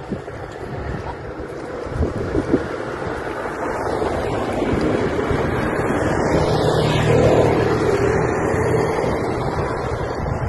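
Steady rushing noise of wind on the microphone and a passing vehicle, swelling to a peak about seven seconds in and then easing, with two brief knocks about two seconds in.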